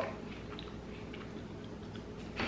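A person chewing a crispy puffed corn snack: faint, scattered crunching.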